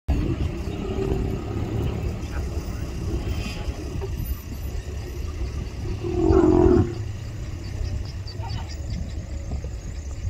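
Low, steady rumble of an idling safari vehicle engine, with a short, louder voice sounding once about six seconds in.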